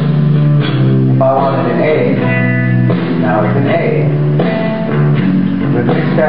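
Loop-based backing track of drums, bass guitar and guitar playing back as a continuous groove from a multitrack arrangement built out of pre-made music loops.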